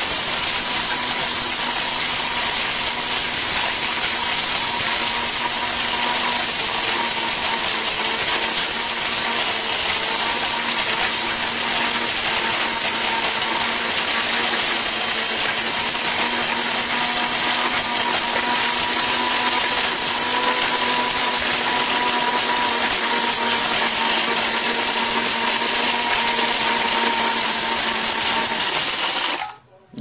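ORPAT blender with a stainless-steel jar running at full speed, its motor whining steadily while whole dried turmeric pieces rattle and grind against the steel jar. The motor runs continuously, then is switched off and cuts out suddenly just before the end.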